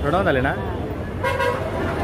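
A short single beep of a vehicle horn about halfway through, over women's voices talking and street chatter.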